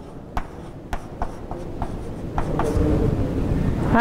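Chalk tapping and scraping on a blackboard as figures are written: a string of sharp, separate taps for about two and a half seconds, followed by a louder, denser rustling noise near the end.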